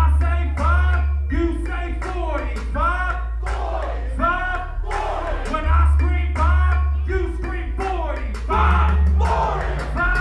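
Live hip hop performance: a heavy bass beat with a vocalist shouting and chanting lines over it through the PA.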